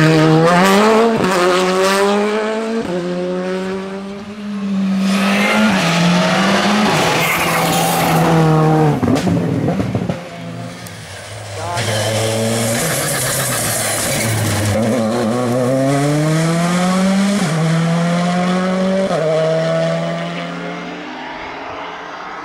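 Rally cars at full speed on a tarmac special stage, one after another, each engine revving hard and climbing in pitch, then dropping back at each upshift as the car accelerates through the gears.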